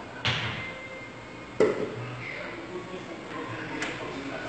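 Pool balls on a billiard table struck during a shot: a sharp clack about a quarter second in, then a louder knock about a second and a half in.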